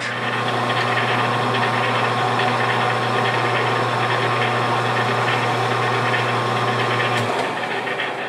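Metal lathe running with its chuck spinning while a high-speed steel boring bar takes a light cut inside the part, a steady machine hum with a higher whine. The low hum stops near the end.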